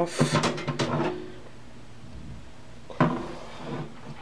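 Sheet-metal side panel of a Gateway DX4860 desktop tower case sliding off its rails, scraping and clattering through the first second. Another clatter comes about three seconds in as the loose panel is handled.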